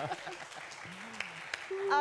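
Studio audience applauding lightly, with a faint voice in the middle; speech starts again near the end.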